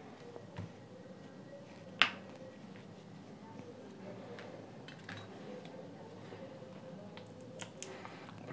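Metal tweezers set down on a tabletop with one sharp click about two seconds in, followed by faint handling noise and a few small ticks as the speaker's plastic end cap is gripped.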